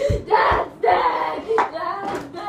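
A boy's voice making wordless vocal sounds in short, bending, sing-song bursts. Two low thumps come in the first half-second.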